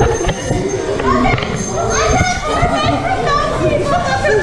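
Several riders on a river-raft water ride shrieking and laughing, with rushing, splashing water under their voices.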